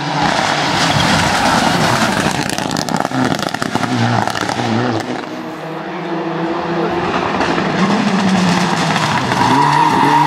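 Mitsubishi Lancer Evolution rally car's turbocharged four-cylinder engine at full throttle as it slides through a tight bend, tyres scrabbling and spraying gravel, with a run of sharp crackles a few seconds in. Near the end a second rally car's engine comes in, its note rising as it accelerates up to the corner.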